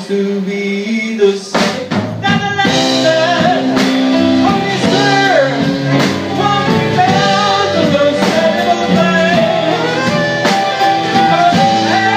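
Live blues band playing a slow blues ballad: saxophone leading with long notes that bend in pitch, over electric guitar, piano, bass and drums.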